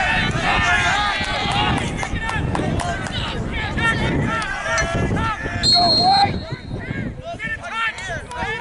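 Voices shouting across a lacrosse field, with one short, shrill referee's whistle blast about six seconds in.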